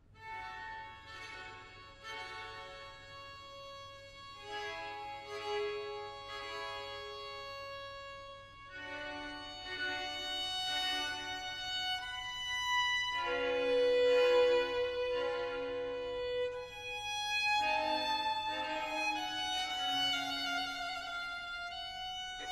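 Baroque string orchestra: a solo violin plays a slow melody of long held notes over soft dotted-rhythm repeated-note figures in the orchestral violins. The phrases are separated by brief pauses and swell louder midway.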